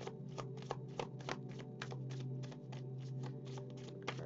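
A deck of oracle cards being shuffled by hand, a quick, even run of card snaps at about three or four a second, over a steady low hum.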